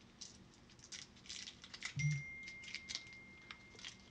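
Faint, irregular light clicks and taps. About two seconds in comes a short low thump, with a thin high tone held for nearly two seconds.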